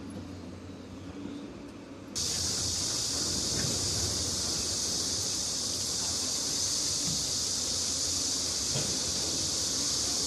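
A cicada chorus droning steadily at a high pitch. It starts abruptly about two seconds in, over a quieter low outdoor background.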